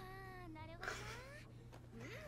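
Faint, high-pitched voice of a female anime character speaking a short line of episode dialogue, in rising and falling pitch.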